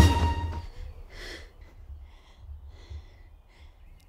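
Music dying away in the first half second, then a few faint breaths from a woman, the clearest about a second in.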